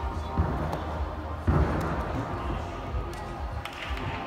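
Music with a steady bass beat, and about a second and a half in a loud thud as a gymnast lands a tumbling pass on the sprung floor-exercise floor, with a smaller thud about half a second in.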